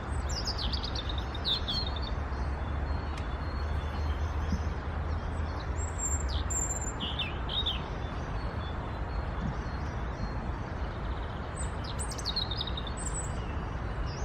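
European robin singing: three short phrases of high, thin, quickly varied notes, one near the start, one around the middle and one near the end, over a steady low background rumble.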